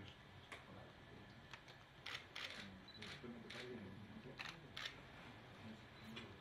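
Digital SLR camera shutter clicking about seven times, single shots and quick pairs spread through.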